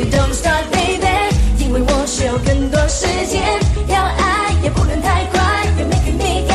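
Female lead vocal singing a funk-pop song in English over a full backing band with a steady drum beat and heavy bass.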